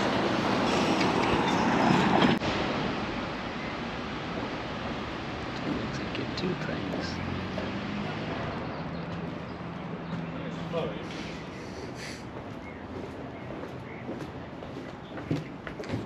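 Outdoor ambience: road traffic going by for the first two seconds or so, then an abrupt cut to quieter background noise with distant voices.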